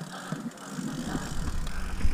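Mountain bike rolling down bare rock slabs, its tyres and frame giving a light rattle of small knocks. From about a second in, a low rumble of wind on the microphone and tyre noise grows louder as the bike gathers speed.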